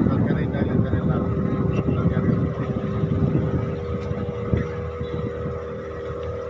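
A boat's motor runs steadily under a rumble of wind on the microphone. A steady drone of the engine comes through more clearly about halfway in, and the whole sound eases slightly toward the end.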